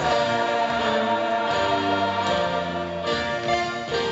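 Show choir of mixed male and female voices singing, the chords held steadily.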